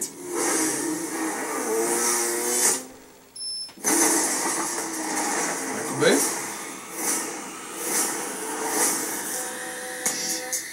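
Action-movie trailer soundtrack playing through a laptop speaker: dense sound effects and voices, dropping out briefly about three seconds in.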